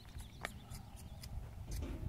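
A horse walking on soft arena dirt: faint, irregular clicks and muffled hoofbeats, a few a second.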